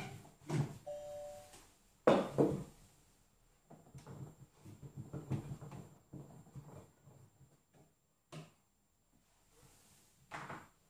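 Monsieur Cuisine Connect kitchen robot being opened and handled. There is a click, then a short two-tone beep about a second in, then a loud clunk as the lid comes off. After that comes a run of lighter knocks and scrapes around the stainless steel mixing bowl, and one more click near the end.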